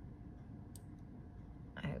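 A single short computer mouse click over a low steady room hum, made while a canvas is dragged and resized on screen.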